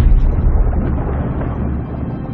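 A sudden deep boom as a great white shark lunges at a seal at the surface, then a low rumble that dies away after about a second and a half, over a background music score.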